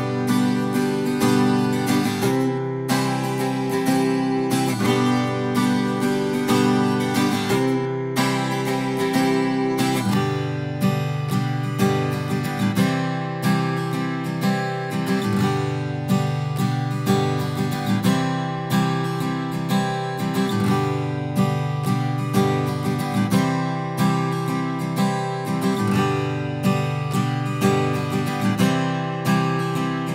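Acoustic guitar playing the same short part over and over, each pass recorded through a different large-diaphragm condenser microphone. It is a 12-string guitar at first, then a 6-string guitar from about a third of the way in, with fuller low notes.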